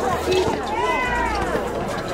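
Basketball sneakers squeaking on the outdoor court as players drive and cut, a couple of high arching squeaks about the middle, over steady crowd chatter.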